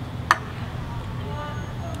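Steady low rumble of distant urban traffic, with one sharp click about a third of a second in and a faint distant voice near the middle.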